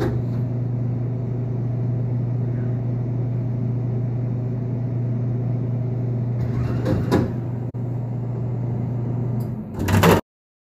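Glass-front drinks vending machine humming steadily while its delivery lift carries a can of Coca-Cola. There is a clunk about seven seconds in and a sharp click just after it.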